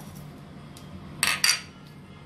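Two sharp clinks, about a third of a second apart, a little past the middle: a plastic scoop knocking against the mixing bowl as cumin seeds are tipped into batter.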